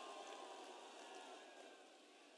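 Near silence: a pause in a speech, with only a faint hiss that slowly fades.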